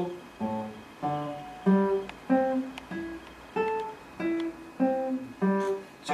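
Nylon-string classical guitar played one note at a time in a slow, even finger exercise: about nine plucked notes, each short and separate, moving between strings.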